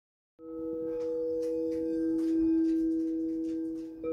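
Opening music of sustained ringing tones, two steady pitches held together with fainter higher overtones, like a singing bowl. It comes in just after the start, swells a little midway and fades near the end, with a few faint light strikes over it.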